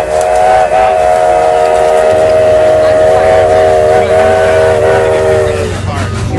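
A train horn sounding one long blast, a loud chord of several steady tones held together, which cuts off near the end. A low rumble joins about two seconds in.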